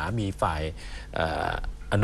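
A man talking in Thai at a steady pace, pausing on a held syllable just before the end.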